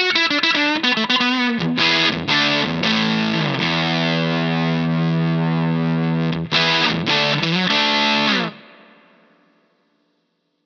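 Gibson ES-335 reissue electric guitar with humbuckers, played through a Greer Amps Soma 63 vintage preamp/overdrive pedal for an overdriven tone. Quick lead lines with string bends give way to strummed chords and a long held chord. A few more strums follow, then the playing stops suddenly about eight and a half seconds in and the last chord fades out.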